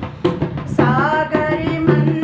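A woman singing a Hindi devotional bhajan and accompanying herself with hand strokes on a dholak barrel drum. There is a brief gap in the voice at the start, filled by drum strokes, and the singing comes back in just under a second in.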